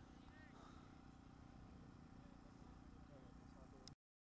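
Near silence: faint outdoor ambience with a low rumble and faint distant voices, cutting off to dead silence just before the end.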